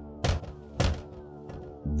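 Two knocks on a window pane, about half a second apart, over a steady, sustained background music bed.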